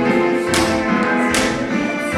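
Tap shoes striking the stage floor over recorded backing music with sustained chords; two sharp taps stand out, about half a second in and about a second and a half in.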